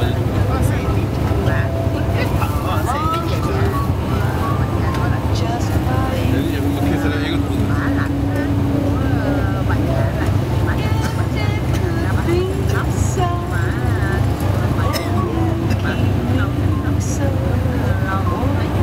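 Steady low rumble of a tour bus's engine and tyres on the freeway, heard from inside the cabin, with indistinct passenger chatter over it.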